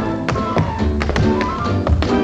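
Tap shoes striking the floor in a tap-dance routine, several sharp irregular taps, over an orchestra playing the dance tune with held notes.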